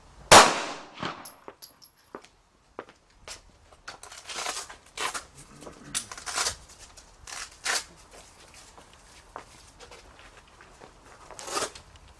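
A single gunshot into a concealable bullet-resistant vest strapped over a backing board: one very loud sharp report with a short fading tail. A few seconds later come a series of short tearing rips and rustles as the vest's hook-and-loop straps are pulled open and the vest is lifted off.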